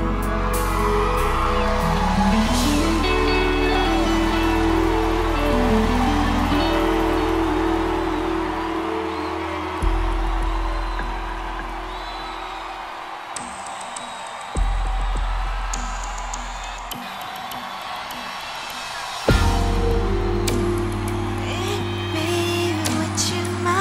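Slow live band intro with held keyboard chords and deep bass notes that drop out and come back in with a hit three times, over an arena crowd cheering and whooping.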